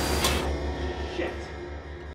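Film soundtrack: a low, pulsing bass drone under a short whooshing hit in the first half-second, the whole fading down toward the end.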